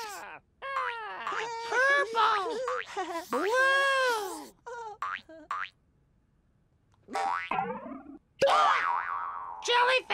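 High-pitched cartoon character voices chattering in wordless sounds with swooping pitch. After a short pause about seven seconds in comes a rising sound effect, then a sudden burst as a surprise egg pops open.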